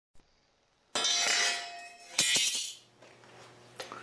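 Two sharp ringing clinks about a second and a quarter apart, each ringing out and fading over about a second.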